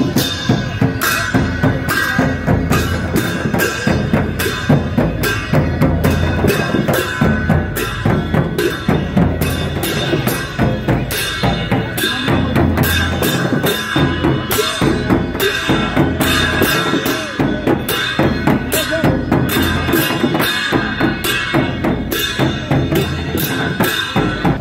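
Two-headed barrel drums beaten by hand and stick in a steady, driving rhythm, several drums playing together.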